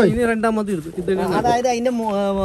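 Speech only: a man talking, drawing out one long vowel near the end.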